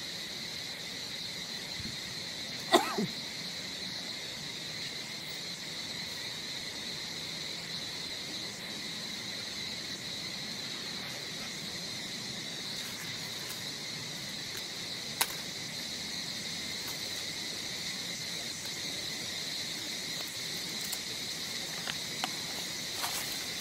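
Steady, high-pitched drone of insects. A short, sharp sound about three seconds in is the loudest moment, and there is a smaller click about midway through.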